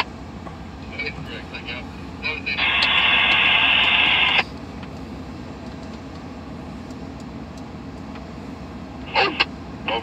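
Railroad scanner radio opening with a loud hiss of static for about two seconds, with short clipped bits of radio voice before it and again near the end. Under it runs the low, steady idle of a stopped Amtrak GE P42DC diesel locomotive.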